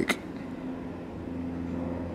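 A pause in speech filled by a steady, faint low background hum.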